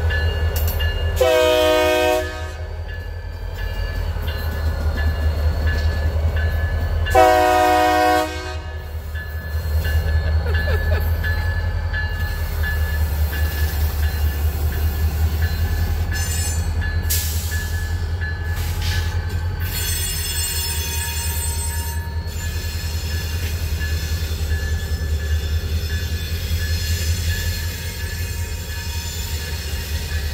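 Two short blasts of a diesel locomotive's chord horn, about 1 s and 7 s in, over the steady low rumble of a pair of EMD diesel locomotives, a GP40N and an SD40N, running together. Brief high wheel squeals come through in the middle as they pull away along the track.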